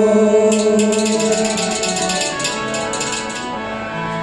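Harmonium playing steady held chords in Kashmiri folk music. From about half a second in until near the end, a fast, high, even rhythmic percussion plays over it.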